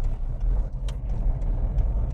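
Steady low rumble of a car's engine and tyres heard from inside the cabin as the car drives on a wet road.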